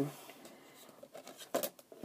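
Faint handling of a plastic DVD case, with one short sharp plastic click about one and a half seconds in.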